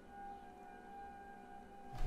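Faint, steady high tone of a distant tornado warning siren being tested.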